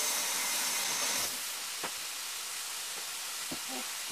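Chicken strips sizzling steadily in a frying pan, with a kitchen tap running for about the first second as hands are rinsed, then shut off. A couple of faint clicks follow.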